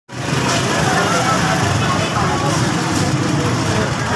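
Busy street-market ambience: a small motorcycle engine running close by, with the chatter of a crowd of voices underneath.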